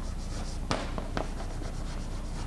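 Chalk writing on a blackboard: a few short taps and scrapes of the chalk as a word is written, over a steady low hum.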